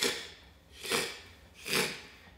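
A man making two short "shh" hisses with his mouth, about a second apart, imitating a slinky stepping down a flight of stairs.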